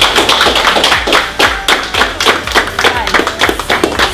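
A small group of people clapping, quick uneven claps packed closely together.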